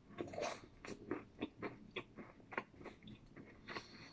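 A person biting into food and chewing it close to the microphone: faint, irregular wet clicks and crunches of the mouth, several a second.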